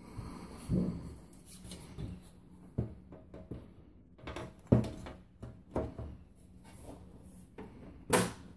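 A computer tower's side panel being handled and fitted back onto the case: a series of knocks, clatters and scrapes, the sharpest knock about halfway through.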